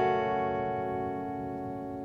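Ibanez AZES40 electric guitar chord ringing on after being struck, its notes held steady and fading slowly.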